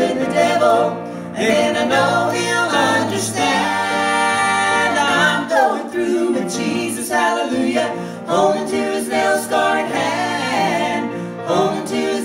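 A gospel vocal trio of two women and a man singing in harmony, with a long held chord a few seconds in.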